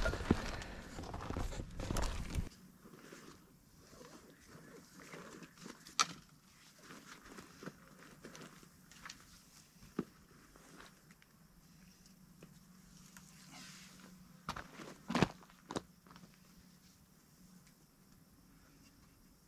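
Plastic shopping bag rustling and crinkling in the hand for the first two and a half seconds. Then faint footsteps on a dirt track and scattered knocks of packs and gear being handled, with a sharp knock about six seconds in and a cluster of louder ones near the end.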